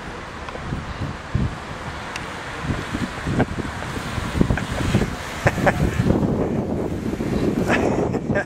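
Wind noise on a handheld camera's microphone over street ambience, with a vehicle close by. From about a second in there is a string of irregular knocks and bumps as the camera is handled on the way into the car.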